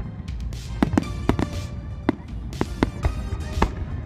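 Aerial fireworks shells bursting in a rapid, irregular run of sharp bangs, about a dozen in four seconds, over music with steady tones.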